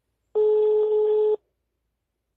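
A single steady telephone tone, about a second long, heard down a phone line: the ringing tone of a call being placed.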